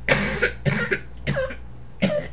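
A person coughing three times in quick succession, the first cough the longest. It is a persistent cough that a cough drop isn't helping.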